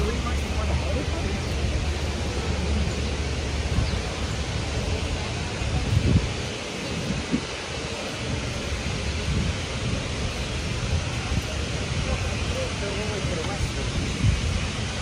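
City sidewalk ambience: steady street noise with passers-by talking. A low rumble, like a vehicle running, fills the first four seconds or so and then fades.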